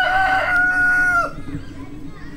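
A rooster crowing once: a single held crow of a little over a second that drops in pitch as it ends.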